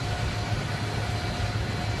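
Steady low engine drone with a faint, constant high whine, the running-engine noise of an airport tarmac.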